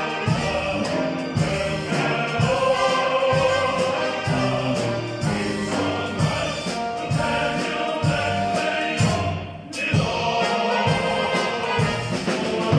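Live stage music heard from the auditorium: a choir singing over orchestral backing with a steady beat. The music drops out briefly about ten seconds in.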